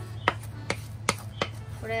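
A wooden spatula stirring thick, freshly reduced caramel in a stainless steel frying pan, knocking sharply against the pan four times at roughly even intervals.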